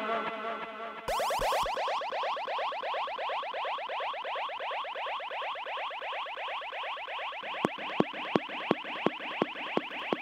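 Electronic dub siren effect between tunes, making a fast run of short rising chirps at about eight a second. From about three-quarters of the way in, sharp regular ticks join it.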